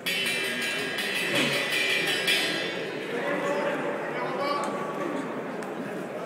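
Metallic ring bell struck rapidly, ringing loudly for about two and a half seconds and then fading under crowd chatter in a large hall: the signal for the next round to begin.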